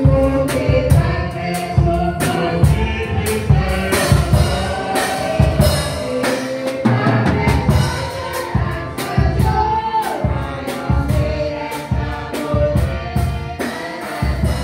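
Gospel hymn sung by several voices into microphones, accompanied by a Roland EXR-7s electronic keyboard, with a steady drum beat.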